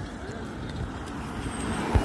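A car driving past close by, its tyre and engine noise growing louder near the end as it draws alongside.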